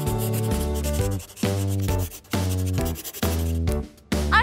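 Scratchy pencil-drawing sound effect over children's background music made of short, steady notes. The sound breaks off briefly about once a second.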